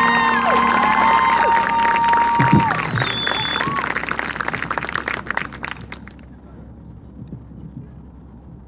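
Stadium crowd cheering and clapping, with a few rising-and-falling whistles in the first three seconds. The applause thins out and dies away about six seconds in.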